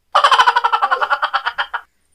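A loud, rapid crackling rattle, about a dozen cracks a second, lasting just under two seconds and starting and stopping abruptly: the prank's fake backbone-cracking sound as the back is pressed.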